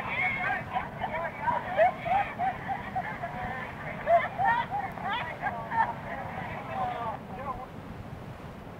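Passengers on a moving tour bus chattering and laughing over one another, with the bus's low engine and road rumble underneath, as heard on a lap-held cassette recorder. The voices thin out near the end.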